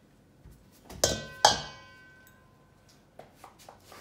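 A glass measuring cup knocking twice against a stainless steel mixing bowl, half a second apart, each knock leaving the bowl ringing briefly, as the last of the almond flour is tapped out.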